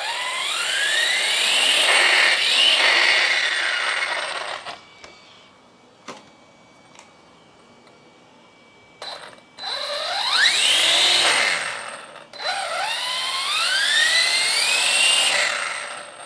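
Brushless motor and drivetrain of a YiKong RC off-road truck, run on 6S, whining up in pitch as the throttle is opened with its wheels lifted off the table: one spin-up lasting about four seconds, then after a pause two more close together in the second half. With no differential lock, the open differential lets the lifted wheels spin freely.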